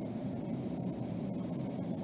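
Steady low background noise of room tone with no distinct events.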